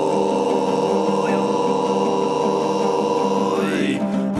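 Altai kai throat singing: a steady low drone with a whistling overtone held high above it, which glides upward near the end, over the rhythmic plucking of a two-stringed topshur.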